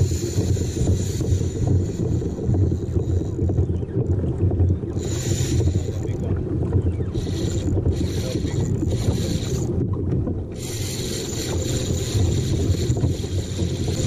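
Wind buffeting the microphone at sea, a steady low rumble, with a thin high hiss above it that breaks off a few times, around four to five seconds in and again near ten seconds.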